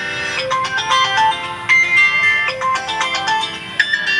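A mobile phone ringing with a melodic ringtone, a tune of clear bright notes that begins a moment in.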